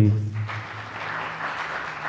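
Audience applauding, starting just after the call to give it up for someone and going on steadily.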